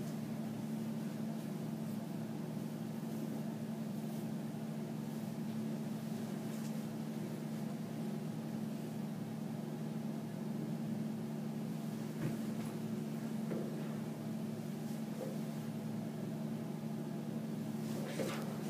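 A steady low hum in a quiet room, even throughout, with a few faint soft clicks near the end.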